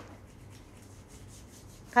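Faint rubbing and rustling of fingers handling something close to the microphone.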